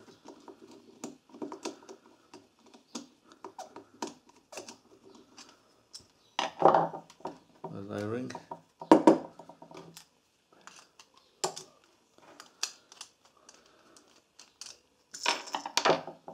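Small, irregular metal clicks and scrapes as a screwdriver works inside a small-engine carburetor body to unscrew the main jet and emulsion tube, with small parts tapped down on a wooden bench.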